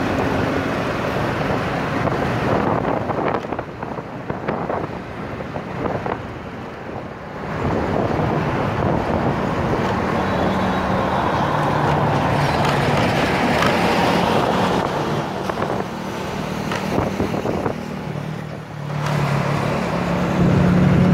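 Wind rushing over the microphone on top of the steady road and engine noise of a vehicle moving at speed. A low engine hum comes up about eight seconds in, and the noise eases briefly twice.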